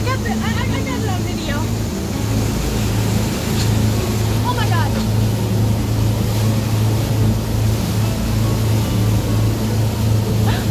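Motorboat under way at speed: a steady low engine drone under the rushing of its churning wake and wind. Brief high-pitched voices cut in near the start and again about halfway through.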